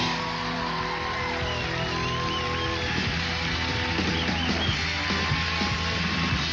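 Live band music led by guitar, with held notes and a bending melody line, playing the show out to a commercial break.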